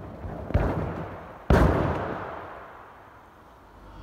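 Two heavy thuds about a second apart, the second louder, each echoing through a large hall: a gymnast tumbling and landing on a sprung floor-exercise floor.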